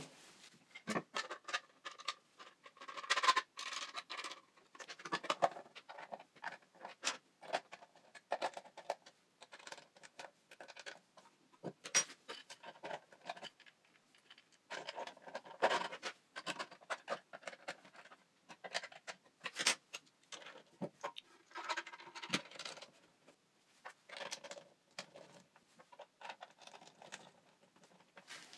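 Hand assembly of 3D-printed PLA plastic parts with metal screws: irregular clicks, taps and short scraping sounds as the plastic pieces, knurled thumbscrews and bolts are handled and fitted together.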